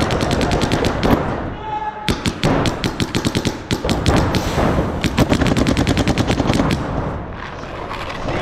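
Paintball markers firing rapid strings of shots, about ten pops a second at their fastest, heaviest from about two to five seconds in.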